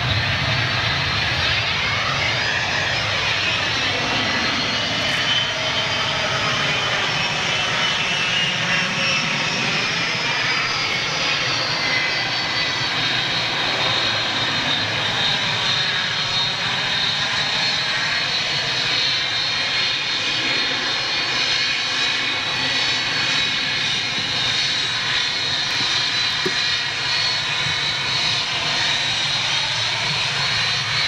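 Jet engines of a taxiing Boeing 757 airliner at low thrust: a steady rush with a high whine, its tone slowly sweeping as the aircraft moves.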